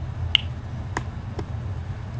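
Three sharp computer-mouse clicks, the first the loudest, over a steady low hum.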